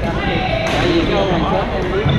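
People talking in a large gymnasium, with two sharp hits a little over a second apart.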